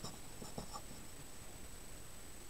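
Marker pen writing on paper: a few faint, short scratching strokes.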